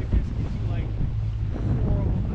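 Wind buffeting the microphone as a heavy low rumble, over the steady low hum of an inflatable boat's outboard motor; faint voices come through now and then.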